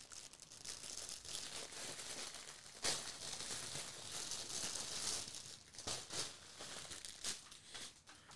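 Faint rustling of a knit, fleece-lined LED beanie being handled and pulled on over the head, with a single sharp click about three seconds in.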